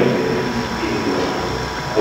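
Steady background hiss and hum of an old recorded lecture during a pause between phrases, with a faint steady tone and no distinct event.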